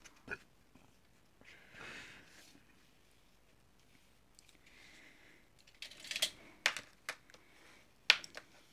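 A paper booklet cover being folded in half by hand: a faint click, soft rustles of the sheet sliding, then several sharp clicks and taps near the end.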